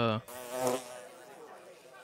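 A housefly buzzing for under a second, then fading out.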